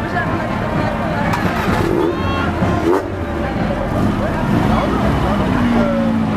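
Classic cars' engines running as they crawl past at walking pace, a steady low rumble under the chatter of onlookers.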